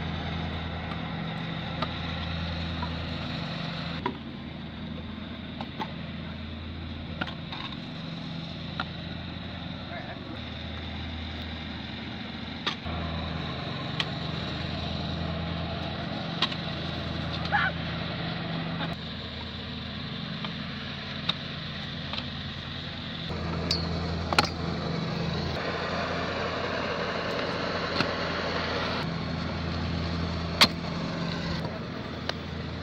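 Stunt scooter wheels rolling on asphalt, with sharp clacks as the deck and wheels land tricks, a dozen or so times.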